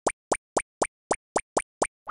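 Cartoon sound effect: a steady run of short, identical pops, about four a second, each a quick upward sweep in pitch, marking the footsteps of a walking animated cat.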